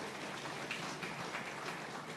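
Audience applauding: dense clapping from many hands that slowly dies down.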